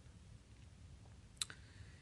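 Near silence: room tone broken by one short, faint click about one and a half seconds in, a mouth click just before the narrator speaks again.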